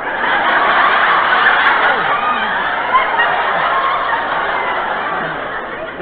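A studio audience laughing: a long wave of laughter that slowly dies down toward the end.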